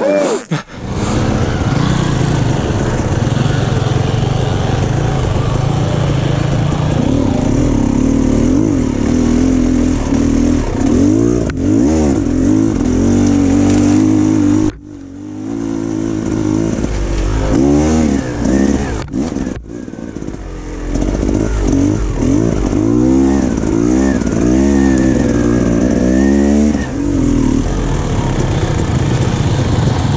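Dirt bike engine running as the bike is ridden along a trail, revving up and down again and again, with two brief drops off the throttle partway through.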